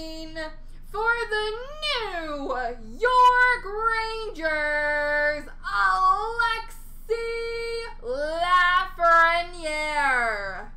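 A person singing wordlessly in a high voice: a run of notes, some held for about a second, others sliding up and down in pitch, with short breaks between phrases.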